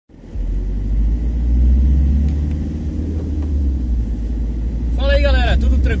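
School van driving along, its engine and road noise heard inside the cabin as a steady low rumble. A man's voice starts near the end.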